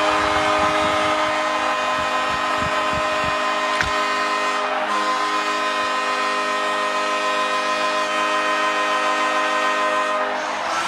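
Ice hockey arena goal horn blowing one long, steady blast over a cheering crowd, signalling a home-team goal; it stops near the end.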